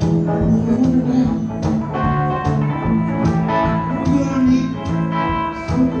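Live solo blues: guitar played over a steady kick-drum beat, about two beats a second, in an instrumental stretch of the song.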